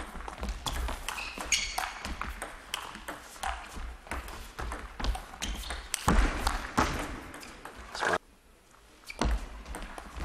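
Table tennis rally: a plastic ball clicking off rubber-covered bats and the tabletop again and again, against a chopper's defensive returns. The sound drops out for under a second near the end, then the hits resume.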